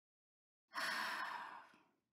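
A single sigh, a breathy sound about a second long that fades away.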